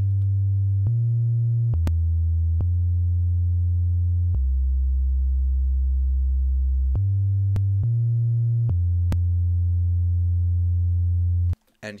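Sub-bass synthesizer playing alone: a steady, deep, pure tone that steps to a new note several times, with one longer held note in the middle. There is a faint click at each note change, and it stops shortly before the end.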